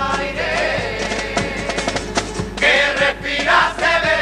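An all-male carnival murga chorus singing in unison into stage microphones, with steady percussion hits under the voices; the singing grows louder in the second half.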